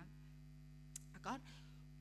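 Low, steady electrical mains hum, with a faint click about halfway through and a brief voiced sound just after it.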